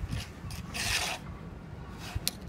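Hand trowel scraping through wet cement mortar in a short series of strokes, the longest and loudest about a second in.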